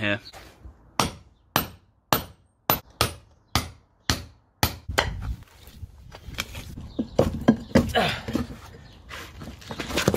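A long steel bar driven down into concrete and stones under a paving slab: about eight sharp strikes, roughly two a second. They give way after about five seconds to irregular scraping and crunching as the bar prises at the broken rubble.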